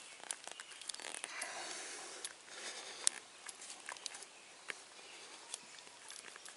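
Faint rubbing and scraping with scattered small clicks as a brass hose-end fitting is twisted and worked by hand into the cut end of a garden hose.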